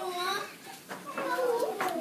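Young children talking at a table, voices chattering with a short lull about half a second in, and a couple of light knocks.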